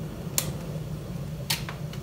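Two sharp clicks about a second apart as a hand handles the open stainless-steel lid of a Dualit electric kettle, over a steady low hum.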